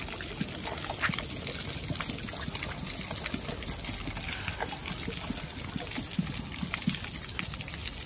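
Water pouring steadily from a splash-pad spout and splattering onto the wet ground, with small splashes as a child's hand breaks the stream.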